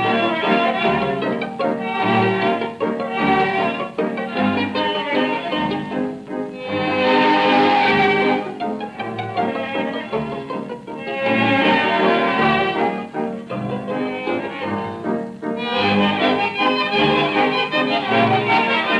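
Instrumental passage of a 1932 tango-orchestra waltz (vals) recording: violins carry the melody over a bass that marks the beat with regular low notes.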